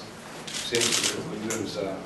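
A man speaking Slovenian into press microphones, with a short papery rustle about a second in, like sheets being shuffled.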